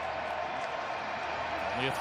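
Steady stadium crowd noise at a college football game, an even hiss with no single event standing out; a commentator's voice comes in near the end.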